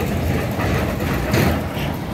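Linked galvanized steel barrier sections with fence panels, towed by a pickup across asphalt, make a steady low rumble. A short knock comes about one and a half seconds in.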